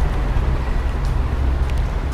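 Steady deep rumble of city street background noise, with no distinct event standing out.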